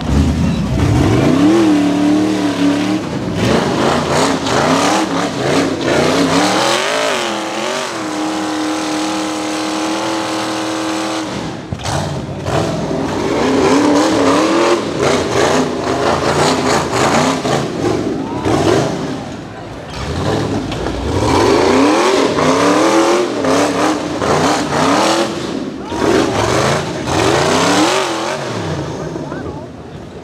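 Rock bouncer buggy's engine revving hard again and again as it claws up a rocky hill, its pitch rising and falling with each throttle stab and held at one high steady pitch for about three seconds near the eight-second mark. Sharp knocks of tires and chassis against rock come through between the revs.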